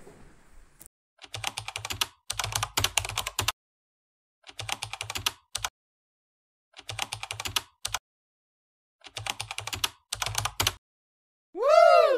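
Keyboard typing sound effect: rapid key clicks in five bursts of about a second each, separated by short pauses. Near the end comes a short tone that rises and then falls in pitch.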